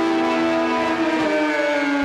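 Intro sound effect under the title card: a loud held chord of several tones that slowly slides down in pitch, like a siren winding down.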